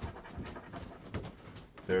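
A coin scratching the coating off a lottery scratch-off ticket: a rough, irregular rasping in short strokes with a few sharp clicks.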